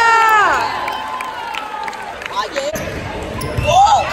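A drawn-out shout of "oh yeah" fades out about half a second in. It is followed by a few sharp knocks of a ball bouncing on the hardwood gym floor, and another voice rises near the end.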